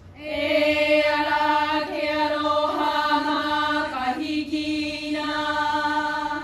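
Hawaiian chant (oli) for a hula kahiko: chanted voice holding long notes on a near-steady pitch with a slight waver. It breaks briefly about four seconds in, then goes on.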